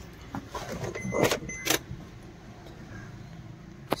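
Handling sounds inside a car's cabin: small clicks and rustles, with two short sharp sounds a little past one second and near one and a half seconds in, and a sharp click just before the end.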